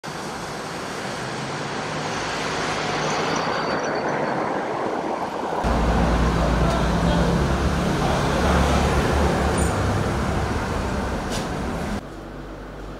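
Road traffic noise: a steady rush that builds over the first few seconds. About halfway through it switches abruptly to a louder, deeper rumble.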